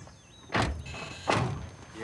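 Two car doors shut with solid thunks, less than a second apart.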